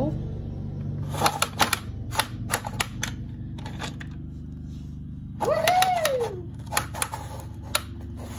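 A plastic toy train turntable being turned by hand, giving clusters of sharp plastic clicks as it rotates. About halfway through, a voice gives one drawn-out rising-then-falling exclamation.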